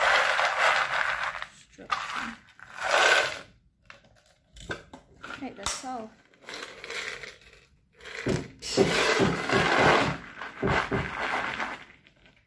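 Small clear glass crystals rattling and clinking against each other and the wooden box they are poured and shaken into. They come in several bursts of a second or two, the longest about two thirds of the way through.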